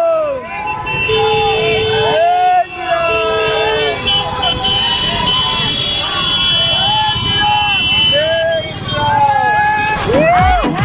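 A group of motorcycle and scooter riders shouting and cheering over the running engines. A horn sounds twice in the first few seconds, a held tone of about a second and a half and then a shorter one.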